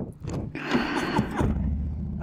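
Rushing noise, then, about a second and a half in, the steady low rumble of a Harley-Davidson Milwaukee-Eight 114 V-twin running on a 2020 Low Rider S, which carries on.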